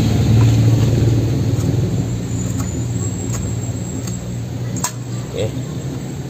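A steady low engine hum, loudest at the start and fading away, with a single sharp tap about five seconds in.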